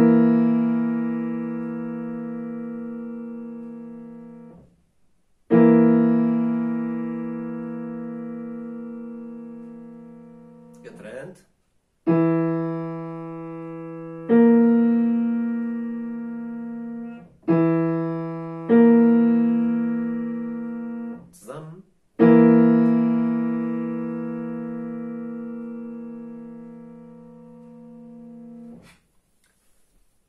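Digital piano playing a slow dictation exercise: seven held chords, each struck, left to fade for a few seconds and then released. The first and last are held longest, and two pairs come in quicker succession in the middle.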